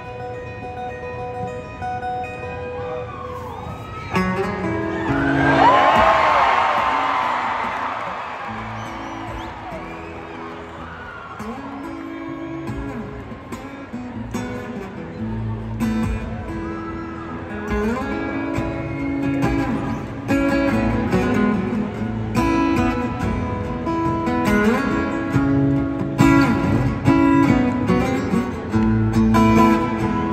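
Solo acoustic guitar played live, picking out a song's intro in single notes and chords. About four seconds in, a swell of audience cheering and whistling rises over it and fades by about nine seconds.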